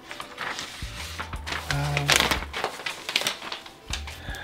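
Sheet of sublimation transfer paper rustling and crinkling as it is peeled off a pressed polyester blanket and handled, with a louder crinkle about two seconds in.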